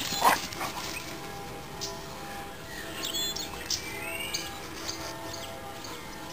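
A dog barks once, loud and short, about a second in, over background music that plays throughout.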